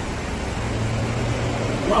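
Steady rain falling, an even hiss throughout, with a low hum through the middle.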